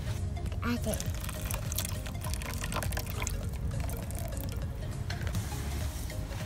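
Water being poured from a metal bowl into a metal muffin tin and splashing, with a few light knocks.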